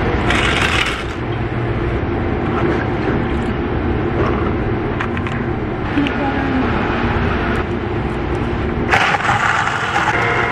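A steady mechanical hum with a few light clinks of a scoop against a plastic blender cup. Near the end comes a louder burst as a Ninja portable blender starts mixing a protein shake.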